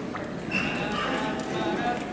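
Indistinct talking of voices in a large hall, with a light, irregular clatter of knocks underneath and one voice coming through more clearly about half a second in.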